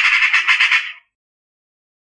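Eurasian magpie's harsh chattering call: a fast run of rasping notes that stops about a second in.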